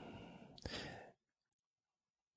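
A man breathing softly close to the microphone: a quiet breath, a mouth click about half a second in, then a second, slightly stronger breath that ends about a second in.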